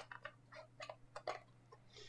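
Faint, scattered light clicks and taps of black card stock being handled, folded and pressed into place by hand.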